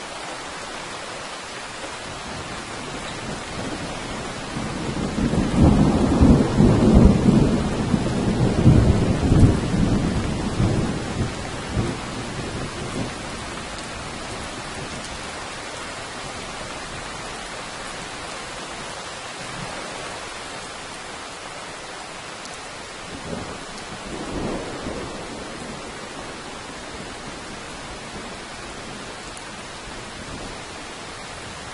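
Steady rain with a long roll of thunder that builds a few seconds in, rumbles loudly for several seconds and fades away, then a shorter, fainter rumble of thunder later on.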